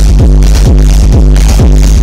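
Electronic dance music played loud, with a steady four-on-the-floor kick drum at about two beats a second over a sustained deep bass line.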